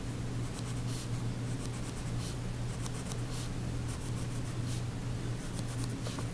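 Graphite pencil making short tick marks on paper along a ruler: a series of brief scratches roughly a second apart, over a low steady hum.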